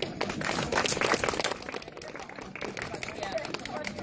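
Several women talking among themselves, with a burst of scratchy, clattering noise in the first second and a half.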